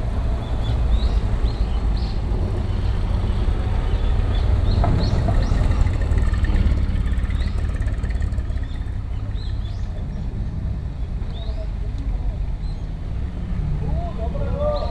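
Small birds chirping repeatedly, short high rising notes, over a steady low rumble that swells slightly midway.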